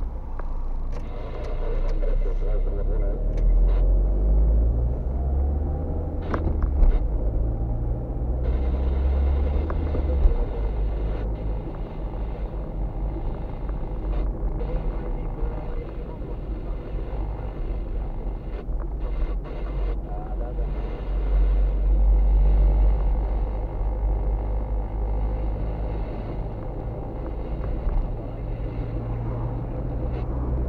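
Car engine and road noise heard from inside the cabin while driving, a steady low rumble whose engine note rises and falls several times as the car speeds up and slows.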